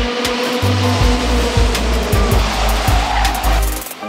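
A pack of racing karts with 125cc two-stroke engines running at high revs as they pass, their pitch dipping slightly midway, over background music with a heavy bass beat.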